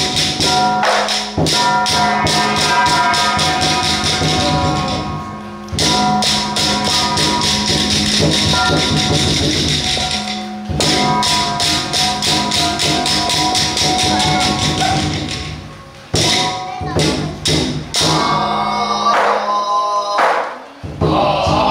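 Xiaofa temple ritual percussion: metal gongs and cymbals beaten rapidly, many strikes a second, over a steady metallic ringing. The playing breaks off briefly three times.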